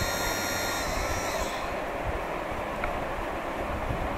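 12 V brushed DC motor running with no load, a steady whir, drawing about 0.9 A.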